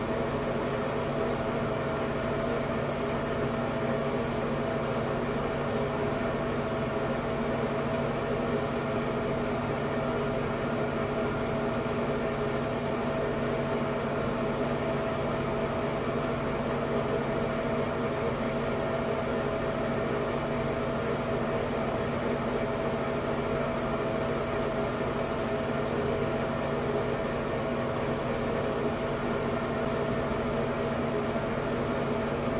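Ceiling light-and-fan combo exhaust fan running, a steady hum over an even whoosh of air with no change.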